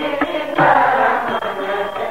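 Sikh devotional kirtan: voices chanting a hymn line in long, held notes, with steady sustained accompaniment typical of a harmonium.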